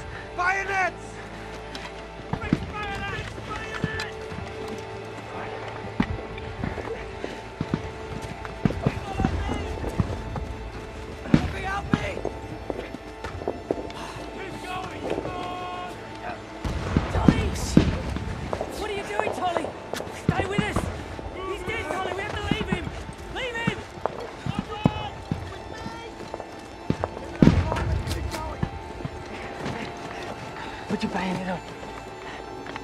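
Film battle soundtrack: a sustained musical score under indistinct shouting and yelling of men, broken by sudden sharp bangs, loudest around halfway and near the end.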